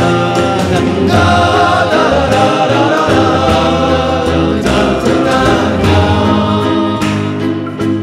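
Psychedelic pop / art-rock song: layered, choir-like singing over sustained chords, with light percussive hits.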